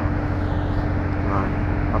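A steady low mechanical rumble with an unchanging hum, from a running motor or engine nearby, and a faint voice briefly about halfway through.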